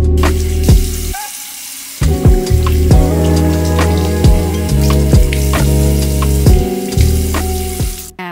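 Background music with a bass line and drum beat, over the hiss of water running from a bathroom sink faucet as hands are rinsed under the stream. The music's bass drops out briefly about a second in.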